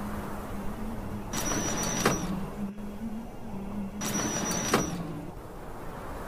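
Sound effects for an animated title: two brief whooshing sweeps with a high, thin ringing tone on top, about two and a half seconds apart, each closing on a sharp hit, over a steady low hum.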